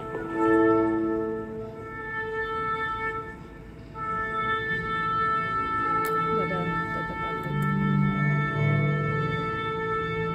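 Orchestral music with long held woodwind and string notes, heard through cinema speakers.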